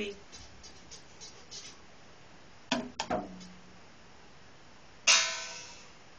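A child hitting a toy drum set: two quick hits close together about three seconds in, then a much louder hit near the end that rings on and fades over about a second.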